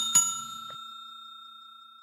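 A bell-like notification ding sound effect: two quick strikes at the start, then its clear tones ring on and fade slowly.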